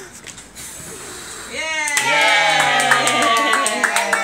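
A child's breath blowing out a birthday candle, then, about a second and a half in, several adults and children cheering with a long drawn-out "yay" and clapping in time.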